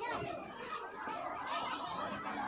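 A crowd of people talking at once, many overlapping voices with no single speaker standing out.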